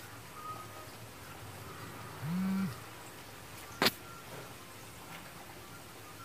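Oil sizzling steadily as vadas deep-fry in a kadai. A brief low hum of about half a second comes in about two seconds in, and a single sharp click follows a little over a second later.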